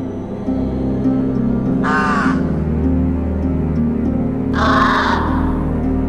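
A crow cawing twice: a short harsh call about two seconds in and a longer one near five seconds. Slow, sustained low music plays underneath.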